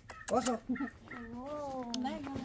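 A young dog whimpering: a few short high cries, then one longer drawn-out whine.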